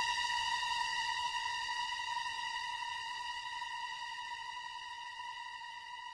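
A single sustained high electronic note, steady in pitch with a bright buzzy edge, slowly fading out as the last held note of a slowed-down music track.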